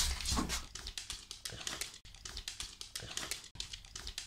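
Beagle moving about just after drinking from a toilet bowl: a run of soft, quick clicks, several a second, with no water sounds.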